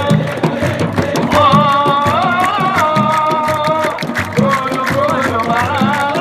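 Football supporters singing a chant together in long, wavering held notes over frame drums beating a steady rhythm.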